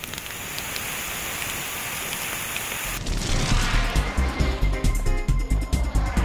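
Steady hiss of a water jet dousing a fire, lasting about three seconds; then background music with a strong, regular beat starts abruptly.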